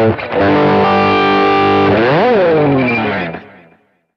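Distorted electric guitar (an Ibanez) through effects: after a brief break it sustains a held note for about a second and a half, then the pitch swoops up and dives down, as from the tremolo arm, and the sound fades out just before the end.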